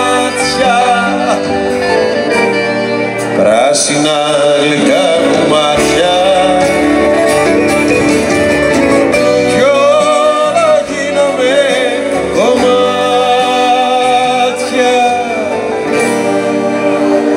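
Live performance of a Greek song: singing over strummed acoustic guitar and band accompaniment, continuous throughout.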